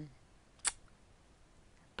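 A single short, sharp click about two thirds of a second into an otherwise quiet pause in speech.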